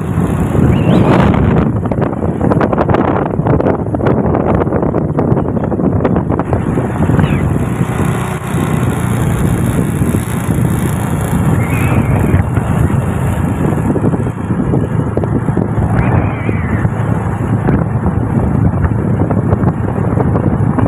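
Wind buffeting the microphone over the steady rumble of a moving road vehicle's engine and tyres.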